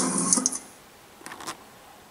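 A man's spoken word trails off, then a quiet room with a few faint clicks about a second and a half in.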